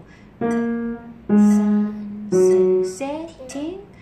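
Samick upright piano played slowly: three single notes struck about a second apart, each held for most of a second and then released. A voice speaks briefly near the end.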